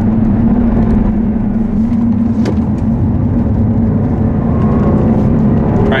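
2014 Jaguar XKR's supercharged 5.0-litre V8 heard from inside the cabin on track, holding a steady note at first. About halfway through the note falls away with a single click. Near the end the pitch rises again as the driver puts the power down.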